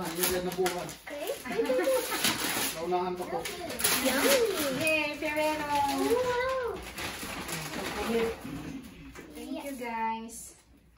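Voices talking, among them a child's high voice, in a small room, with some rustling of gift-wrap paper.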